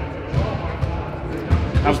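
Basketballs bouncing on a gym floor in irregular thuds, with music playing in the background. A man's voice starts a question near the end.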